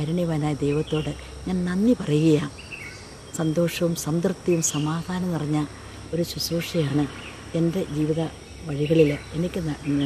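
A woman talking in Malayalam, with a steady high chirring of insects behind her voice.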